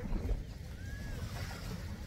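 Wind buffeting a phone's microphone in a steady low rumble at the water's edge, over faint lapping of small waves.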